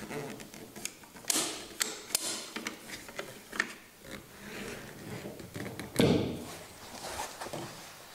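Steel bolt of a Beretta Model 1937 experimental semi-auto rifle being slid out the back of its tubular receiver and handled, giving metallic scrapes and clicks, with a louder knock about six seconds in.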